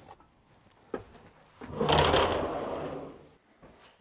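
A door being opened: a click about a second in, then a scraping, rattling noise lasting about a second and a half.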